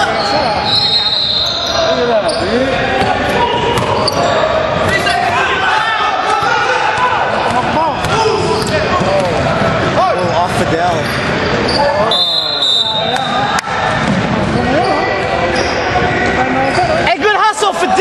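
Basketball game sounds in a large gym: the ball bouncing on the hardwood court, short squeaks and players' voices, echoing in the hall.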